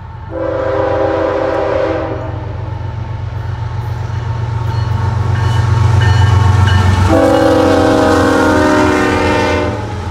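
A CSX freight train's lead diesel locomotive sounding its multi-note air horn in two long blasts, the second longer, over the low rumble of the diesel engines, which grows louder as the locomotive consist approaches and passes.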